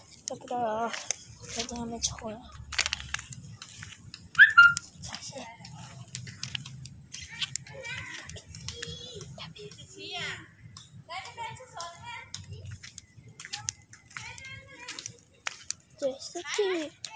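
Voices, including children's, talking and calling throughout, with short sharp clicks like flip-flop footsteps. A short loud high sound about four and a half seconds in is the loudest moment.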